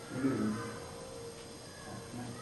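A person's short wordless vocal sound, falling in pitch and lasting about half a second at the start, over a faint steady hum.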